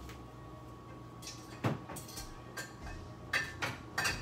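Rummaging in an open refrigerator: a few scattered knocks and clinks as jars and containers are moved about, one about a second and a half in and a cluster near the end.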